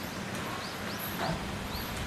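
Steady outdoor background hiss with a small bird giving four short, high chirps in the second second.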